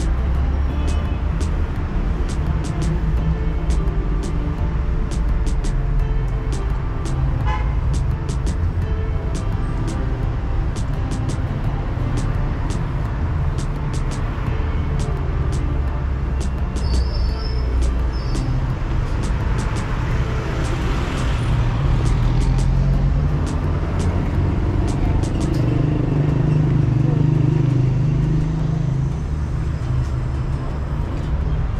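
City road traffic: a steady rumble of passing cars and engines, swelling as a vehicle passes close about twenty seconds in. Light sharp ticks recur about twice a second over it.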